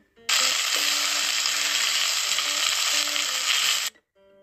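Loud, steady sizzling of chopped noodle strips frying in a pot as they are stirred with a spatula. It starts abruptly just after the start and cuts off abruptly just before the end.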